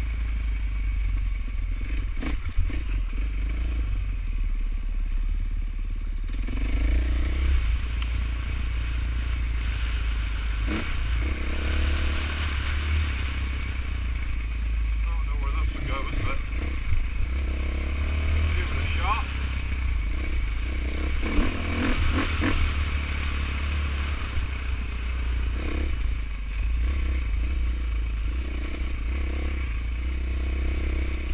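Dirt bike engine running while riding a rocky trail, pitch rising and falling with the throttle. A few sharp clattering knocks come from the bike over rocks.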